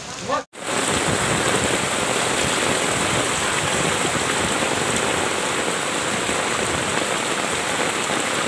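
Heavy tropical rain pouring down, a loud, dense, unbroken hiss. The sound drops out briefly about half a second in, then resumes and holds steady.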